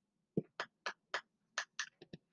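Felt-tip marker drawing on a whiteboard: about six short, quick strokes in a row, the first landing with a light tap.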